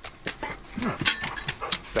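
A dog making short, breathy sounds, amid light clicks and knocks.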